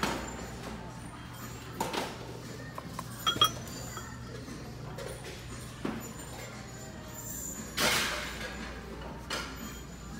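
Shop ambience with faint background music and a steady low hum, broken by a few short clinks and knocks of handled kitchenware and a brief rustle about eight seconds in.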